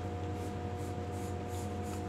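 Pencil on paper: the lead scratching continuously as a curved line is sketched, over a steady background hum.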